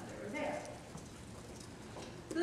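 A woman's lecturing voice through the hall's sound system: a short phrase about half a second in, then a brief pause with only faint room noise.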